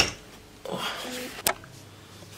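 An open Dell Precision T3500 desktop computer case being handled: a knock right at the start and a sharp click about a second and a half in, with a faint murmur between.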